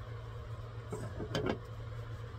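A few light knocks about a second in as the resin vat of a resin 3D printer is set back down onto the printer, over a steady low hum.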